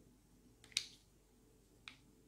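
A hand-held lighter being struck to melt the cut ends of nylon cave line onto a knot: two sharp clicks about a second apart, the first louder with a brief tail.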